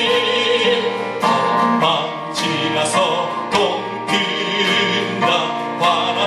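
A man sings a worship song into a microphone with a wavering vibrato, accompanied by an acoustic guitar strummed about twice a second.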